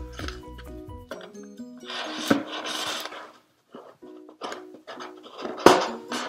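Light background music of short plucked notes. Over it come handling noises from a cardboard shoebox as a wooden skewer is worked through its holes: a scraping rustle about two seconds in and a sharp knock near the end.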